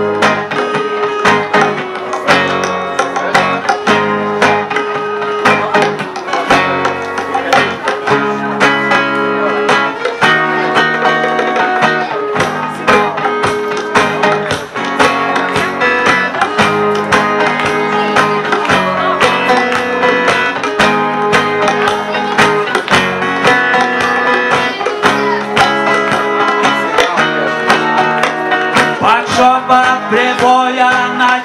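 Live acoustic band playing reggae: two acoustic guitars strumming chords in a steady rhythm, with percussion keeping the beat.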